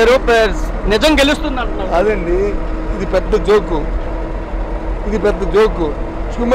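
A man speaking Telugu in an interview, over a steady low rumble from the bus he is standing in.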